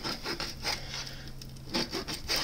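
Kitchen knife slicing through a raw catfish fillet and rubbing on the plate beneath, a few soft strokes over a steady low hum.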